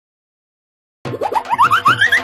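Silence for about the first second, then a cheerful children's outro jingle starts suddenly: a quick run of springy rising pitch glides, each a step higher than the last, over a steady beat.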